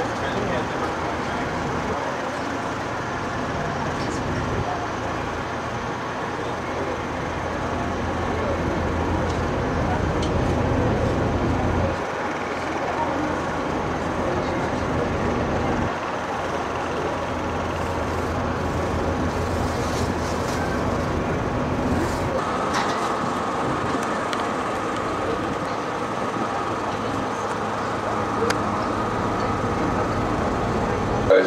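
A river cruise boat's engine running steadily under way, heard from inside the cabin, its low hum swelling and easing a few times. A steady high tone joins about two-thirds of the way through.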